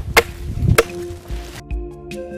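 Two sharp chopping strikes on wood in the first second, a little over half a second apart, as firewood is cut with a blade. Soft background music with held notes fades in under them and carries on.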